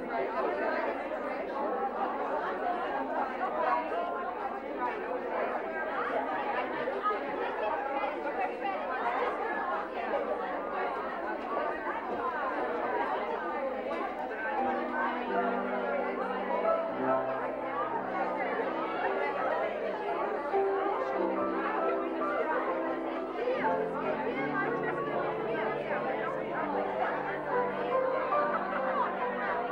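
Dense chatter of many women talking at once in a large room. About halfway through, music of held low chords joins underneath the talk and keeps going.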